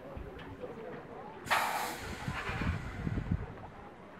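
A sharp hiss of compressed air from a standing red Jungfraubahn electric train, about a second and a half in and lasting about half a second. Voices murmur in the background.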